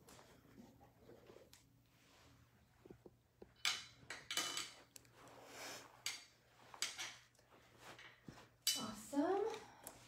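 Light knocks and clicks, several sharp ones between about three and a half and eight and a half seconds in, as a person sits down on a pedal exerciser's stool and sets her feet on its plastic pedals. A faint steady low hum runs underneath, and a voice speaks briefly near the end.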